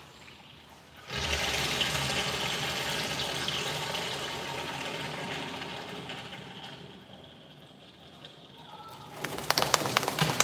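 Water running and splashing in a wash tub during a border collie's bath. It starts suddenly about a second in and tapers off after several seconds. Near the end comes a quick flurry of flapping and spattering as the wet dog shakes itself.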